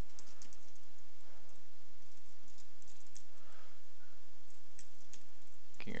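Computer keyboard keys tapped a few at a time, in scattered, irregular clicks.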